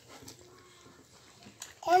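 Quiet room sound with a faint distant voice, then a woman starts speaking near the end.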